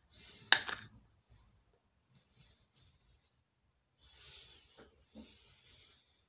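A small makeup item being handled close to the microphone: one sharp click about half a second in, then faint scattered handling ticks and a soft breath a few seconds later.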